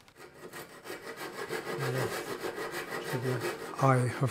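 Handsaw cutting through plywood in back-and-forth strokes, freeing a pre-cut part from a boat-kit panel; it grows louder after a quiet start.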